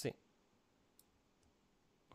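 A faint computer mouse click about a second in, with a fainter tick shortly after, over quiet room tone.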